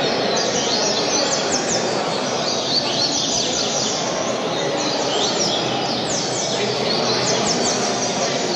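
Double-collared seedeater (coleiro) singing phrase after phrase of quick down-slurred notes, with short pauses between phrases, over a steady background din.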